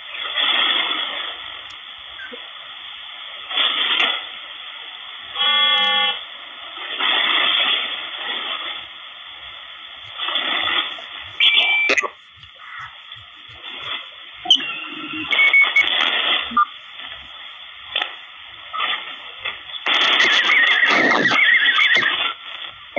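Malachite DSP SDR receiver being tuned across the 10-metre and CB bands in upper sideband: steady band hiss from its speaker, broken by short bursts of garbled single-sideband voices as it passes stations, and a brief multi-tone whistle about five seconds in. A louder voice comes through near the end.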